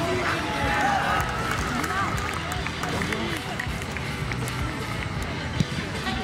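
Footballers shouting and calling to each other on the pitch, loudest in the first second or so, with background music beneath and one sharp knock near the end.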